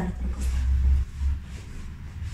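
A low rumble, loudest in the first second or so, then easing to a fainter steady hum.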